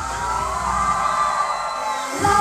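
A held synthesizer chord in the backing music, several steady tones gliding gently in pitch, with the bass fading away near the end as a transition before the beat returns.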